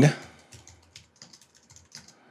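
Typing on a computer keyboard: a run of faint, irregular keystrokes.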